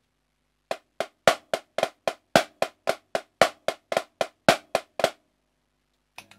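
Marching snare drum played with sticks: one bar of the choo-choo rudiment at a slow, even pace, about four crisp strokes a second, with a louder accented stroke about every fourth note.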